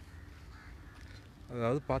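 Quiet outdoor background with a low, steady rumble, then a man starts speaking near the end.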